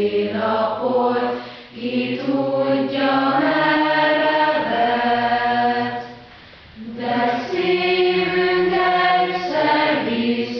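A choir singing a slow song in long held notes, breaking off briefly near the middle.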